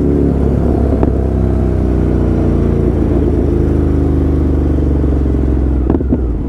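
Motorcycle engine running steadily while riding, its pitch easing slightly lower in the second half as the throttle comes off a little, over low road rumble.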